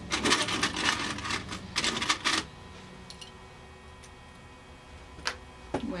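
A rapid clatter of small hard objects clicking against one another for about two and a half seconds, as when sewing notions are rummaged in a container. A single sharp click comes about five seconds in.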